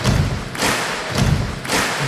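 Song intro: a steady thumping drum beat, just under two beats a second, over a dense noisy wash, just before the vocal comes in.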